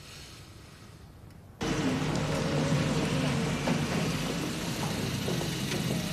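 Quiet room tone, then about a second and a half in a sudden cut to a car engine running steadily and loudly.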